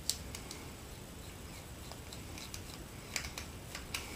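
Small metal clicks and ticks as a screwdriver tightens a 3/8-inch anchor bolt inside a hydraulic roller lifter, expanding it to grip the stuck inner part. The sharpest click comes right at the start, with a few more near the end, over a faint low hum.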